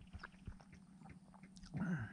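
Faint scattered ticks and light knocks over a low steady hum, in a pause in a man's talk; his voice comes back in near the end.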